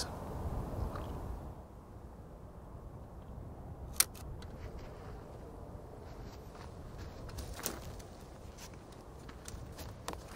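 Quiet outdoor ambience with a steady low rumble. A single sharp click comes about four seconds in, a softer click near eight seconds, and a few faint clicks and knocks near the end.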